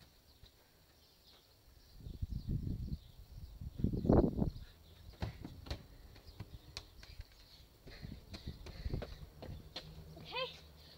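Footsteps and muffled thuds on a garden lawn as a football is kicked and bounces, with the loudest thump about four seconds in, followed by scattered light knocks.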